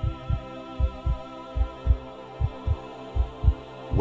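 Heartbeat, a low lub-dub double beat repeating about once every 0.8 seconds, over a steady ambient drone with a faint wavering higher tone.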